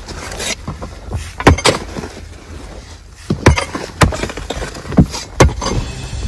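Long-handled digging tool striking and breaking into dry, stony ground in a series of sharp, irregular blows, some coming in quick pairs.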